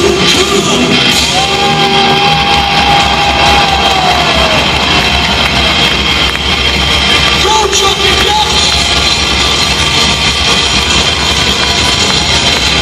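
Live hard rock band with drums and amplified guitars playing loud, heard from the audience in a big hall. A singer holds a long note about a second in that slides down a few seconds later.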